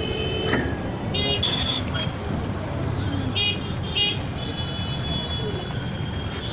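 Street traffic: a steady rumble of engines, with short horn toots about a second in and twice more a little past the middle.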